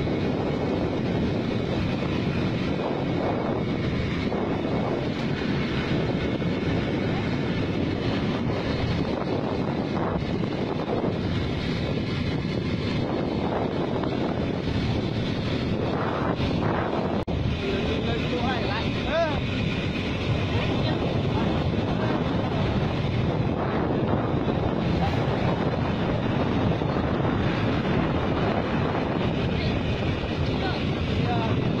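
Wind buffeting the microphone of a phone held out from a moving motorbike, over the steady running of the small motorbike's engine and tyre noise.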